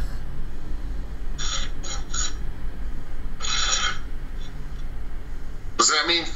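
Ghost box (spirit box) sweeping radio: a few short bursts of static hiss, the longest about half a second, over a steady low hum.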